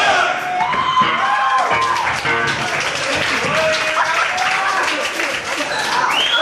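Live hardcore punk band at the close of a song: electric guitar ringing out over shouting voices and scattered clapping from the crowd.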